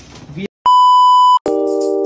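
A single loud, steady electronic beep lasting under a second, after a moment of dead silence. Music then starts: sustained chords with jingling percussion.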